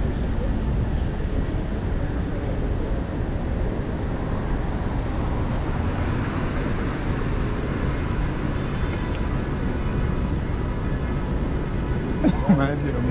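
Steady city street traffic noise with a constant low rumble, heard while walking along the sidewalk.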